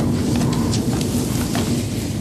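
Meeting-room background with no speech: a steady low hum and an even hiss.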